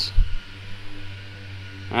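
A brief low thump, then a steady low hum through a pause in a man's talk.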